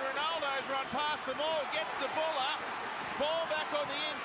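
Rugby league television commentary: a commentator calling the play over stadium crowd noise, at low level.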